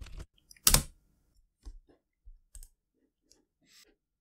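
Computer keyboard and mouse clicks while a file is being saved: one loud click just under a second in, then a few fainter, scattered clicks.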